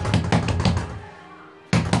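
Rapid pounding on a front door with an open palm: a quick run of about five bangs, a short pause, then a second run starting near the end.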